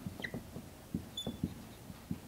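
Dry-erase marker writing on a whiteboard: a faint run of short, irregular squeaks and taps as letters are stroked out, with one brief higher squeak about a second in.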